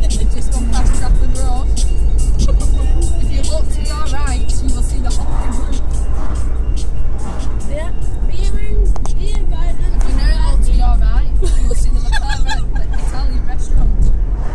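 Steady low engine and road rumble inside a moving car's cabin, with music and voices over it.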